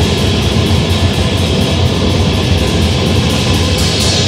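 Grindcore band playing live: loud distorted guitar over fast, driving drums.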